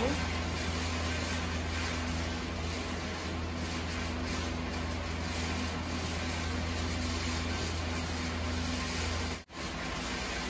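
Chicken and vegetable strips sizzling in a frying pan as they are stirred with a wooden spatula, a steady hiss over a low hum. The sound drops out for a moment just before the end.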